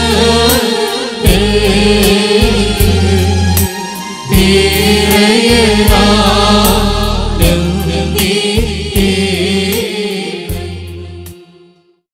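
Small mixed choir of men and women singing a Christian devotional hymn together, over electronic keyboard accompaniment with sustained bass notes and a percussion beat. The music fades out near the end.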